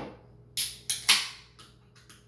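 A Great Western Classic beer can being opened: a small click, then two sharp cracks each followed by a short hiss, the second about a second in and the loudest, fading quickly.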